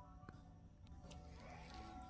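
Faint background music, near silence, with a few light clicks from the phone being handled as it is turned toward the mirror.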